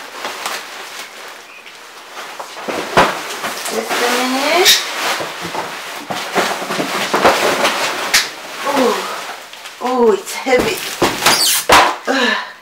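Large cardboard shipping box being handled and moved off a desk, with cardboard and bubble-wrap rustling and a few sharp knocks, the loudest near the end. Short wordless vocal sounds come in between.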